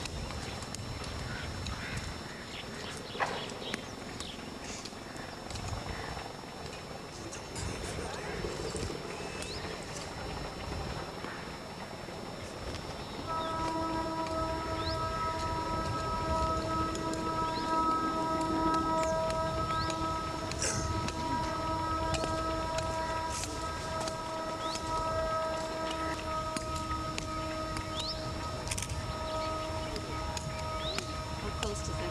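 Outdoor ambience with scattered short, high bird chirps. Somewhat before halfway, a steady held musical tone with several overtones starts and carries on to the end, louder than the rest.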